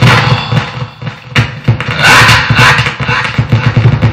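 Vocal beatboxing: irregular bursts of breathy, hissing mouth percussion over low kick-like thumps, with a short break about a second and a half in.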